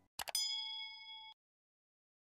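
Subscribe-button animation sound effect: two quick mouse clicks, then a bright bell-like notification ding that rings for about a second and cuts off suddenly.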